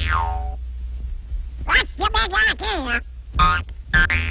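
Cartoon sound effects for a springy mainspring: a boing that falls steeply in pitch at the start, followed by Donald Duck's squawking, quacking voice wavering up and down, over the orchestral score.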